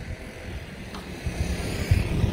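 Open-air street ambience: a steady hiss of distant traffic, with an irregular low rumble from wind on the phone's microphone that grows stronger about a second in.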